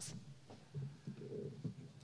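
Faint, low murmur of voices in a large room, with a few soft knocks.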